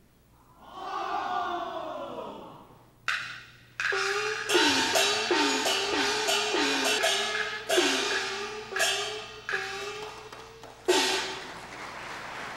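Peking opera gong-and-drum percussion: gongs whose pitch slides after each stroke, with crashing cymbals and clappers. One sliding gong tone opens, then from about three seconds in a fast run of strikes follows in an uneven, quickening pattern.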